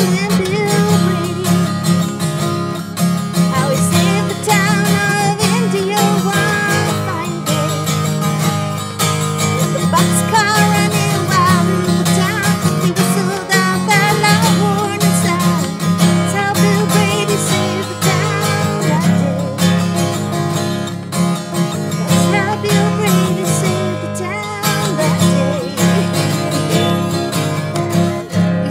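Acoustic guitar strummed steadily while a woman sings along.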